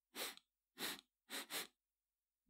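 A person sniffing the air four times in short, quick sniffs, as if catching a smell: an acted sniff at a stench.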